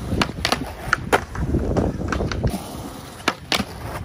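Skateboard wheels rolling on smooth concrete, with scattered clicks from the board. About two-thirds in the rolling drops away, and near the end two sharp clacks come as the board gets onto a ledge.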